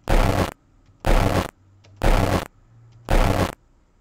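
A half-second snippet of a spirit-voice (ITC) experiment recording, played back four times in a row from an audio editor: each play is a loud burst of harsh, hissing noise, about one a second. The experimenter hears it as a possible word, 'ever', 'he was' or 'error'.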